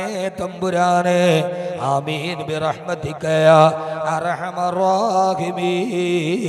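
A man's voice chanting a prayer in long, wavering melodic phrases with held notes.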